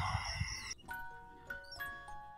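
Faint room tone, then soft background music starts suddenly about three-quarters of a second in: a simple melody of single struck, chime-like notes, each ringing on.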